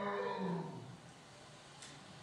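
Recorded voice-like vocalization played back over lecture-hall loudspeakers, which the presenter takes for a Sasquatch first trying to say "flower"; it ends under a second in, leaving room tone.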